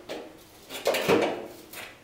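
Sheet-steel door skin's folded edge being prised open with a hand tool: metal scraping and creaking, with a short rasp just under a second in.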